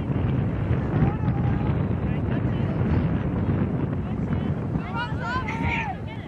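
Wind buffeting the microphone with a steady low rumble, over faint distant voices from the field; a voice calls out near the end.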